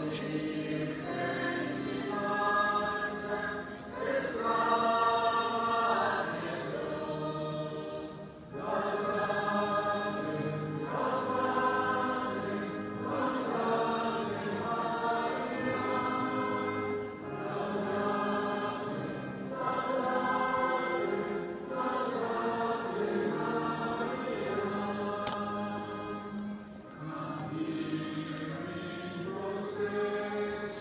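A crowd singing a hymn together, in sung phrases a couple of seconds long with short breaks between.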